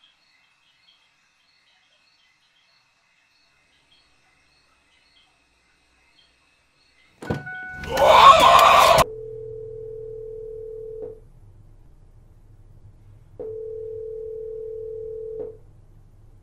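Telephone ringback tone through a phone earpiece: two rings of about two seconds each, with a low hum under them. This is the caller's line ringing unanswered before the call is forwarded to voicemail. Before the rings, faint high chirping is cut off about seven seconds in by a sudden loud crash lasting about two seconds.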